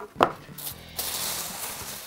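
A short knock as a cardboard box is set down on a wooden table, then the rustle of the box being opened and the plastic wrapping around a wetsuit being pulled back, starting about a second in.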